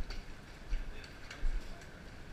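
Bicycles being walked along a sidewalk: irregular light clicking and ticking, with a dull bump about every 0.7 s.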